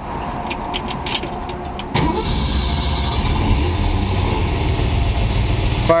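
1966 Ford Mustang K-code 289 High Performance V8, a solid-lifter engine, cranked over by the starter for about two seconds, then firing right up and running steadily, heard from inside the cabin.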